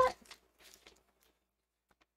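A woman's last spoken word trails off, then near silence with only a faint brief rustle.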